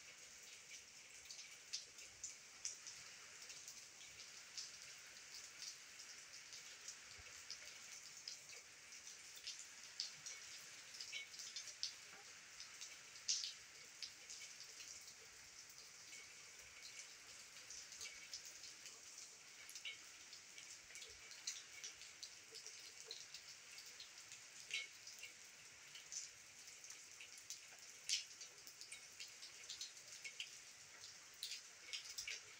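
Light rain: a faint steady hiss with many drops ticking irregularly.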